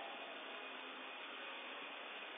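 Steady faint hiss of background noise with no distinct sound in it.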